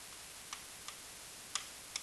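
A stylus clicking against an interactive whiteboard during handwriting: four light, separate clicks over faint room noise.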